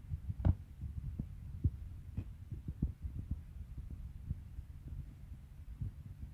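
Low rumble with irregular muffled thumps, several a second: handling and walking noise on a phone microphone carried along behind a flock of sheep.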